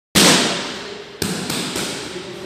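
Gloved punches smacking into focus mitts: four sharp hits, the first and loudest right at the start with a ringing tail, then three quicker ones in the second half.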